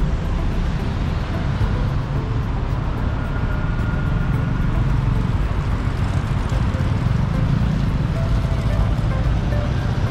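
Steady noise of dense city road traffic, car engines and tyres on a busy multi-lane street, with music underneath.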